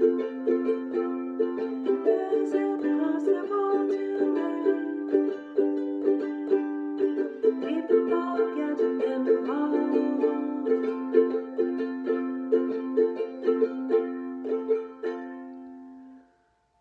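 A woman singing a slow song to a strummed plucked-string accompaniment in a steady rhythm. The sound dies away near the end.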